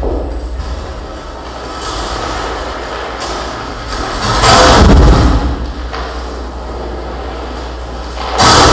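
Harsh noise performance: amplified contact-mic noise making a dense, rumbling wall of sound. About four and a half seconds in, a much louder surge lasts about a second.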